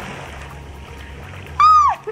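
Water churning and settling after a person's jump into the sea. Near the end comes a single loud whoop from the swimmer in the water, rising then falling in pitch.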